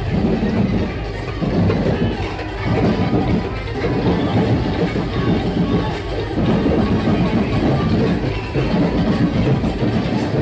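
Loud DJ sound-system music at a street procession, heavy in the bass, with a beat that swells about once a second.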